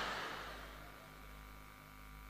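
Quiet pause with a faint steady electrical hum from the public-address sound system; the last of the previous sound fades out in the first half second.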